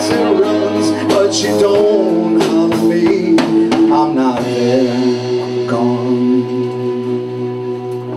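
Live band music: a man singing over acoustic guitar, violin, sousaphone and drums. About halfway through the voice drops out and held instrumental notes carry on, with a steady low sousaphone-range tone underneath.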